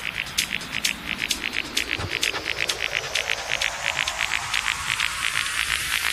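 Electronic dance music from a DJ mix in a build-up: the kick drum has dropped out, leaving fast, even hi-hat ticks over a hissing sweep that rises steadily in pitch.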